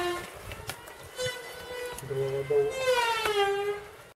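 A person's voice in the background, with drawn-out falling sounds and no clear words: one at the start and a longer one about three seconds in.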